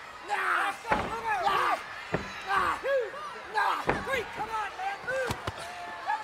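Several sharp slams of wrestlers' bodies and stomps hitting a wrestling ring's canvas, spread across a few seconds, over crowd voices calling out in the arena.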